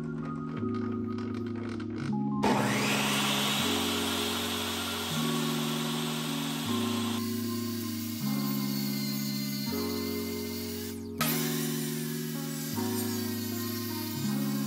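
Jobsite table saw switched on about two seconds in, its motor whining up to speed and then running as a poplar board is ripped along the fence. It starts up again about eleven seconds in. Background music plays throughout.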